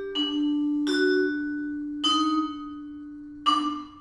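Vibraphone played with mallets: four struck notes, about a second apart, each ringing on and overlapping the next, the last and loudest near the end.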